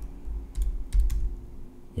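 A few scattered computer keyboard key clicks.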